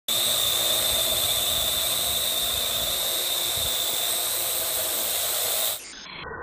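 Parrot AR.Drone 2.0 quadcopter hovering, its four electric motors and propellers giving a loud, steady high whine with a buzzing hum beneath. Near the end the sound suddenly drops and turns duller as the high tones cut off.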